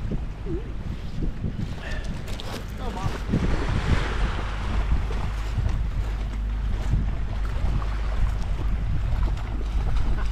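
Wind buffeting the microphone, with small waves lapping on a shingle shore and a dog wading and splashing in shallow sea water, the splashing picking up near the end.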